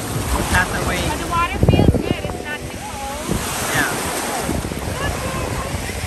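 Small ocean waves breaking and washing up the beach in shallow surf, with wind buffeting the microphone and a loud gust about two seconds in.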